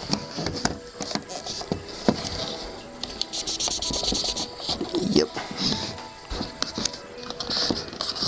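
A wet wipe rubbing and scrubbing over the plastic body of a DSLR battery grip, wiping off mould, with irregular handling clicks and knocks. Background music plays underneath.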